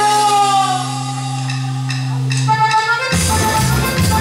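Live Latin dance band playing: a held low keyboard chord with a gliding melody line over it, then the full band with its beat comes back in about three seconds in.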